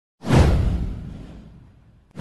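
Intro sound effect: a single whoosh with a deep rumble beneath it, starting sharply a fraction of a second in and fading away over about a second and a half.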